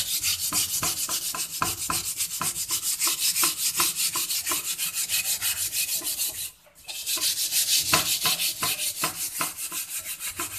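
Steel wool scrubbing the sooty underside of a soaked wok with soap, in fast, even back-and-forth strokes of about five a second. The scraping breaks off briefly about two-thirds of the way through and then resumes.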